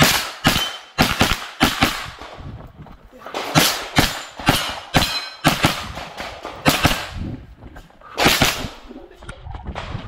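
9mm blowback pistol-calibre carbine firing a string of shots, mostly in quick pairs about half a second apart, with short pauses between target arrays. Each shot leaves a short echo.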